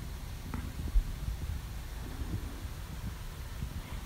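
Quiet low rumble of handheld camera handling inside a car cabin, with a small click about half a second in and a soft thump about a second in, as the camera is moved.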